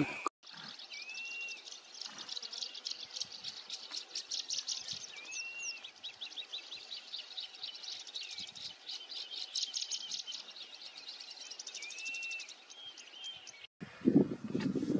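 Wild birds chirping in a busy, rapid chorus, with a clear arched whistle that recurs every few seconds.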